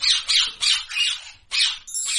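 Parrot giving a run of short, harsh calls, several a second, with a brief pause about one and a half seconds in.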